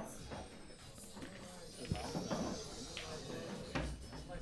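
Faint murmur of background voices from a busy club room, with a few soft knocks, the clearest near the end.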